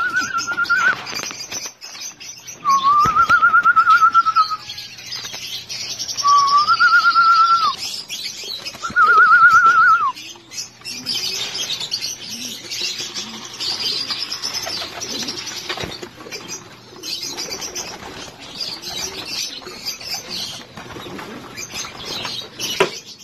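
Racing pigeons in wire-mesh loft cages cooing and flapping their wings, with rustling and clicks from the cages. In the first ten seconds four loud warbling whistle-like tones sound, each lasting about two seconds.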